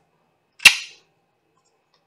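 A single sharp smack about two-thirds of a second in, loud and dying away within a third of a second.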